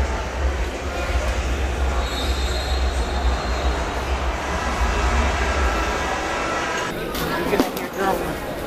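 A steady low rumble with indistinct voices in the background, in a large echoing indoor space; the rumble drops away about seven seconds in.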